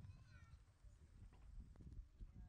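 Near silence: faint outdoor background noise, with a few faint, short, high wavering tones about half a second in.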